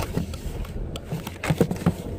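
Handling noise of a phone camera being repositioned against a car's steering wheel: scattered short knocks and rubbing clicks over the low, steady rumble of the car cabin.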